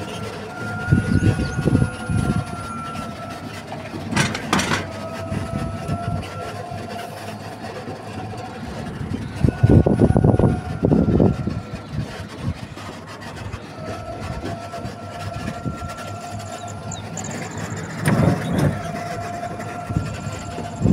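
A moving vehicle heard from on board: a steady whine in two pitches that drifts slightly, under road and wind rumble that swells about a second in, around the middle and again near the end. A single sharp knock comes about four and a half seconds in.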